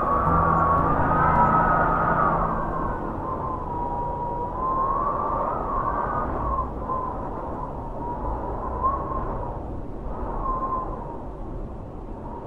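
Wind blowing in a steady low rush, with a whistle that wavers up and down in pitch. Low sustained notes sound under it in the first two seconds.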